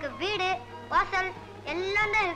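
A boy's high-pitched voice speaking in three short, sing-song phrases, over a steady low hum.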